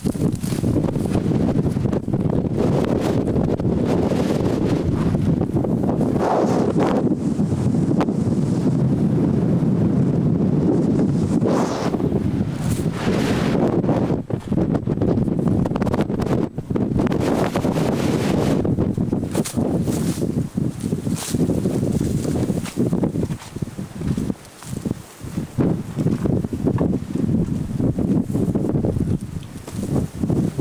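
Wind buffeting the camcorder microphone: a loud, rough rumble that swells and eases, and comes in shorter gusts over the last ten seconds.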